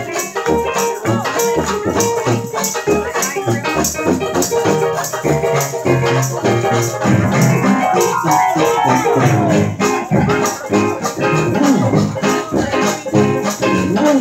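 Live traditional New Orleans jazz band playing a parade tune with a steady beat and pitched instrument lines, with a sliding note about eight seconds in.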